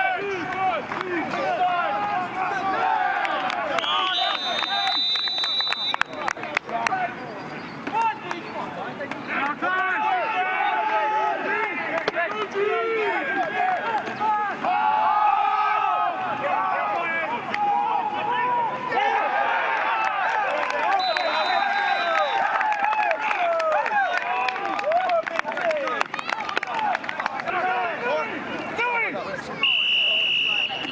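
Many voices talking and shouting over one another, with no single voice standing out. Two short, high, steady tones cut through, about four seconds in and again about twenty-one seconds in.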